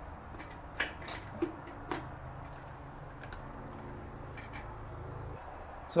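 A few faint, scattered clicks and taps from a bathroom sink's metal pop-up pivot rod and clevis strap as they are worked into place under the drain, over a low steady hum that stops shortly before the end.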